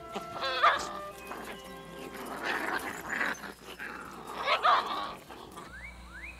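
Wolf pups vocalizing in short calls about half a second in, again around the middle and near the end, over background music.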